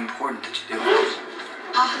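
Film trailer soundtrack playing through a television's speakers and picked up in the room: voices with music underneath.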